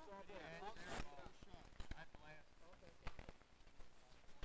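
Faint voices of players calling out across the court, with a few sharp clacks of street-hockey sticks striking the plastic ball and the hard court, about a second in and again around three seconds.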